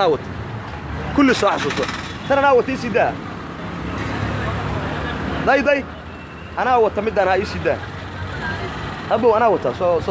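Street traffic, with a low, steady vehicle engine hum. Voices call out every second or two over it.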